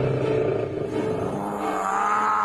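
Tiger roaring: a drawn-out, low rumbling growl, with a higher wavering tone rising and falling near the end.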